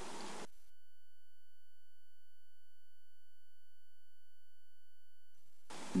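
A faint, steady, high electronic whine holding one pitch with overtones, with no other sound around it. A soft hiss is heard only at the very start and just before the end.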